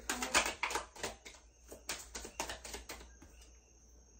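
Deck of tarot cards being shuffled by hand: a quick, irregular run of crisp papery card flicks that stops about three seconds in.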